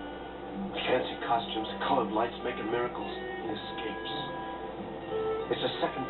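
Old film soundtrack with background music of held notes, over which voices speak indistinctly for a few seconds.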